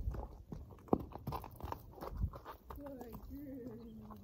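A horse walking on straw-covered dirt: a run of dull hoof steps and rustles through the first half, thinning out after about two and a half seconds.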